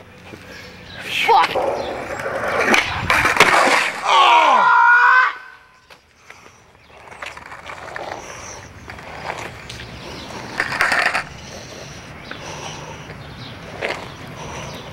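Skateboard clattering and knocking on asphalt in a fall, followed by a long pained yell that wavers and falls in pitch. Fainter scuffs of the board and body on the ground come later, with one short louder scrape.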